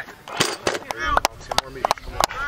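Metal ammo can's handle and lid clicking and knocking as it is handled, several sharp clicks in quick succession, with short bits of voice between them.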